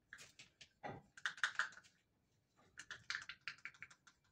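Runs of quick small clicks and taps in two short clusters, one a little past a second in and one near the end, with a soft knock just before the first.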